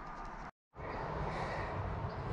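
Faint, even outdoor background noise with no distinct event, broken by a moment of dead silence about half a second in where the recording cuts.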